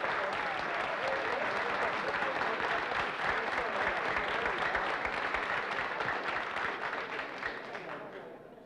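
Audience applauding, dense clapping with a few voices among it, dying away near the end.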